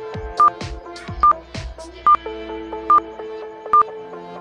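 Quiz countdown timer beeping: a short, high electronic beep about every 0.8 s, five in all, over background music with a steady beat and held notes.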